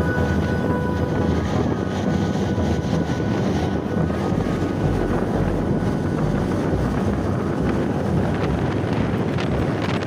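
Wind rushing over the microphone of a phone carried on a moving motorcycle, mixed with steady road, tyre and engine noise on a wet road.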